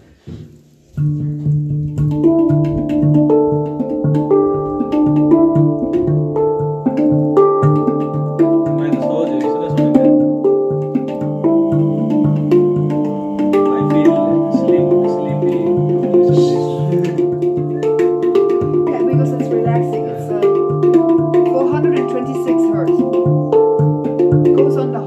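Steel handpan (hang drum) played with the hands: a pulsing low note repeats under ringing melodic notes, starting about a second in.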